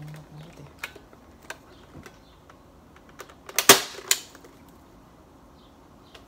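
A fly buzzes briefly at the start. Near four seconds in come two loud sharp cracks about half a second apart, a Bug-A-Salt salt gun fired at the fly on the window, among scattered light ticks.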